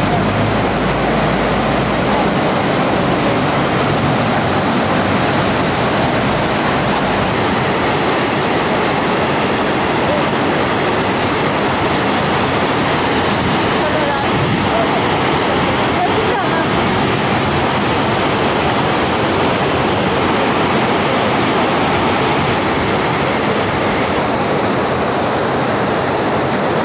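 Steady, even rush of river water pouring over a weir cascade.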